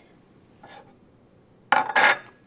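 A plate knocking and clattering against a tabletop as it is picked up, one sharp clatter near the end after a faint touch a little under a second in.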